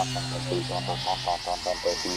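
Electronic music: a steady low synthesizer drone under a fast warbling pulse of about seven beats a second. The drone drops out about halfway through.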